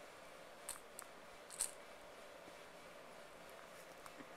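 A baby's lip smacks while eating with his fingers in his mouth: three short, faint clicks about a second in, the last one the loudest.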